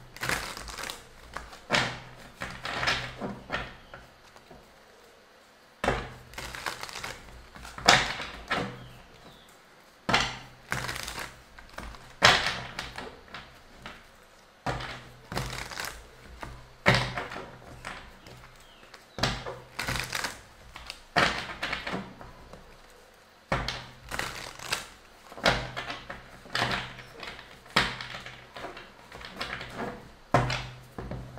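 Tarot deck being shuffled by hand close to the microphone: a run of crisp card strokes and slaps, about one to two a second, coming in clusters with short pauses between them.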